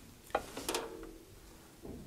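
A small plastic chip dropped into a plastic tub of water: a light click, then a small splash a moment later.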